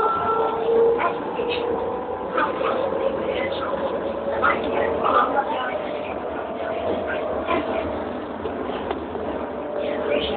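Running noise inside a moving elevated train car: a steady motor whine that drifts slightly in pitch over the rumble of the ride, with passengers' voices in the background.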